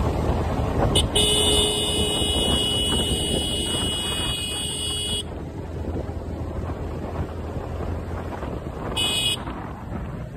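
A motorcycle horn sounds one long steady blast of about four seconds starting about a second in, then a short toot near the end. Beneath it runs the rumble of the Yamaha R15 V3's 155 cc single-cylinder engine cruising, with wind noise.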